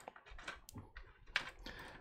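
Faint, irregular small clicks and taps of hands working on the cables inside a PC case.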